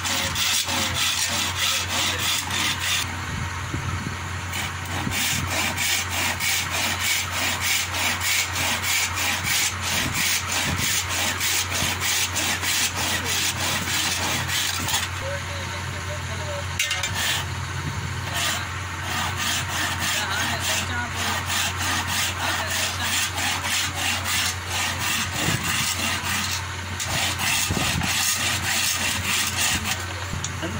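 Hand saw cutting through a thin wooden strip in quick, steady back-and-forth strokes, with a short break about halfway through.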